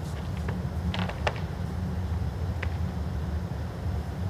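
Steady low hum of indoor arena ambience, with a few faint short clicks about a second in and again past the middle.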